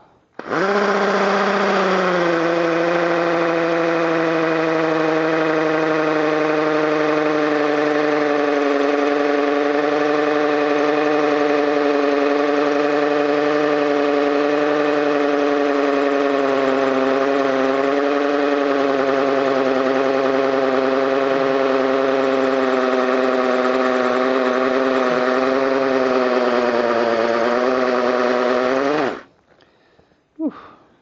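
Chicago Electric 18-volt cordless 1/2-inch hammer drill running continuously for nearly half a minute, driving a masonry bit under heavy pressure. Its pitch sags slightly as it labours, and it stops about a second before the end.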